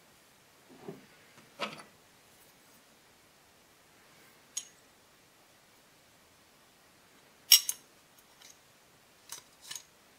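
Steel parts of a Rogers & Spencer percussion revolver clinking and knocking together as they are handled and fitted during reassembly. It comes as a few scattered metallic clicks, the loudest about seven and a half seconds in and a quick pair near the end.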